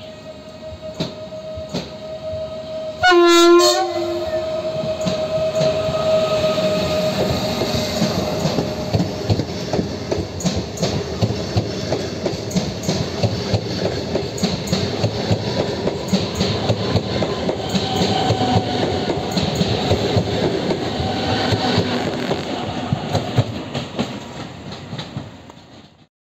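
PKP Intercity ED160 (Stadler FLIRT) electric multiple unit coming through the station: a short horn blast about three seconds in, then the rumble and rapid wheel clicks of the train running close past the platform, dying away at the end.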